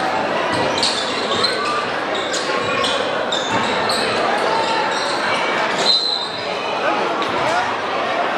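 Basketball game in a gym: a crowd's voices and shouts echoing through the hall, with a ball bouncing and short, high squeaks of sneakers on the hardwood court every second or so.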